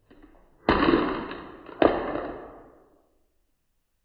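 A plastic pill organizer falling from a table onto the floor: a sharp clatter, then a second clatter about a second later, each dying away over about a second.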